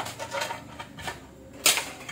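A few light clicks and one sharper clack near the end: small hard plastic or metal objects being handled and set down on a wooden workbench.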